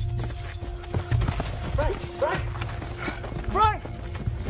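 A person crying out for help in several short, rising-and-falling calls that start about two seconds in, over a low steady rumble, with a few knocks and scuffs near the start.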